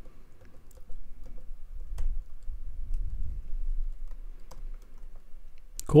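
Typing on a computer keyboard: a sparse, irregular run of key clicks over a faint low hum.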